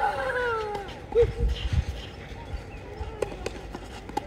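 A child's drawn-out call falling in pitch, followed about a second in by a few low thuds, then scattered sharp ticks.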